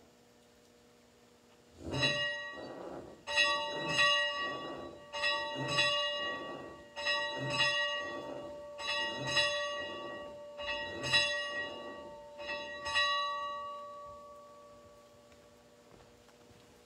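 Church bell being rung: about a dozen strokes in close pairs over some twelve seconds, each left ringing, the last one dying away near the end.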